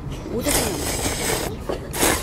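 A man slurping hot instant ramen noodles, a hissing slurp that starts about half a second in and lasts about a second.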